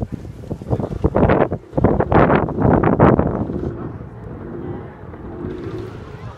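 Wind buffeting the microphone in loud gusts, strongest from about one to three and a half seconds in, then easing to a lower rumble.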